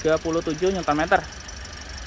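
Toyota 2NR 1.5-litre four-cylinder petrol engine idling with the bonnet open, a steady low hum beneath a brief spoken phrase.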